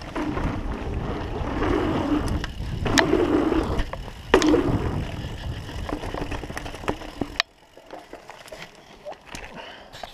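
Mountain bike rolling fast along a forest trail and over a wooden boardwalk: a rough rolling rumble with frequent rattles and clicks from the tyres and bike. The noise drops off sharply about seven and a half seconds in, leaving lighter ticks.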